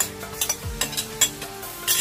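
Marinated mutton sizzling as it goes into hot ghee and browned onions in a nonstick pan, with a silicone spatula knocking and scraping against the pan several times; the loudest knock comes just past a second in.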